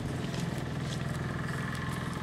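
A motor engine running steadily with a low hum, over outdoor background noise.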